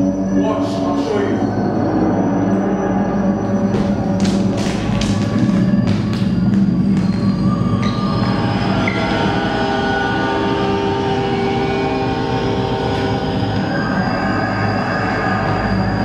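Stage sound effect of a train: a steady low rumble with a few sharp clatters, and sustained music tones building over it from about halfway.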